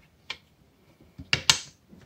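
Push buttons on an Opus BT-C3100 battery charger clicking as they are pressed to set up a quick internal-resistance test: one faint click, then two sharper ones in quick succession past the middle.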